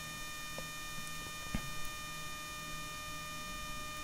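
Faint steady hum of small DJI quadcopter drones hovering in place, with a few even, unchanging tones and two soft clicks about half a second and a second and a half in.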